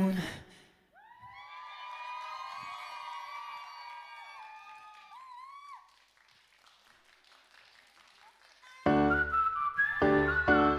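The pop song's music cuts off. About a second later, a high-pitched audience scream in many voices at once is held for about five seconds and trails off. After a near-silent gap, the next song's music comes in with a heavy beat near the end.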